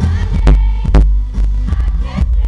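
Loud live pop music through a concert sound system: deep bass and a kick drum thumping about twice a second.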